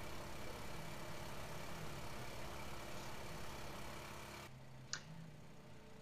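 Small gasoline engine running the Keene PHP500 water pump, a steady hum, with the pump deadheaded and pressure pegged past its 60 psi gauge. The sound cuts off abruptly about four and a half seconds in, leaving a quieter background with a single click.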